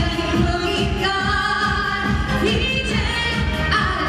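Female voices singing a Korean trot song into microphones over backing music with a steady beat, with long held, wavering notes.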